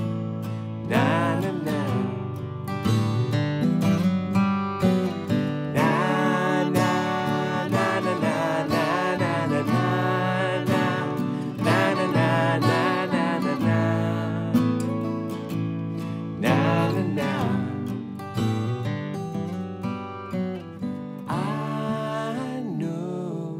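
Acoustic guitars playing an instrumental passage of a folk-pop song, picked and strummed chords ringing together.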